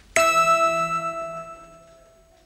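A single bell-like chime, struck once just after the start and ringing on at one steady pitch as it slowly fades over about two seconds: a sound-effect cue for a cutaway into an imagined scene.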